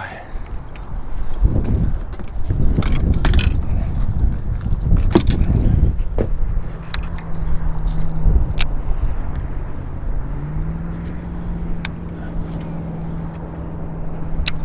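Wind buffeting the camera microphone as a heavy low rumble, broken by sharp clicks from handling baitcasting reels and rods. From about six seconds in, a steady low hum runs underneath.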